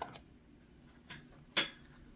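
Hands handling a small plastic earbud charging case: quiet handling with a small click at the start, then one brief, sharp handling noise about one and a half seconds in.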